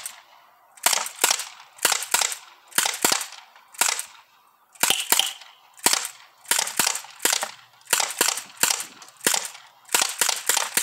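Sig Sauer MPX ASP CO2 air rifle, powered by a 12-gram CO2 cartridge, fired semi-automatically in a rapid string of about twenty sharp shots, two to three a second.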